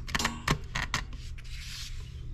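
Handling noise from the camera being repositioned close to a model engine: a quick run of small clicks and knocks, then a brief rubbing hiss near the end.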